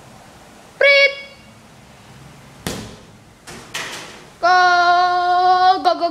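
A child's short high yell, then a football kicked hard on a tiled floor with one sharp thud and two smaller knocks as it strikes and bounces, then a child's long, loud, high-pitched held shout that wavers near the end.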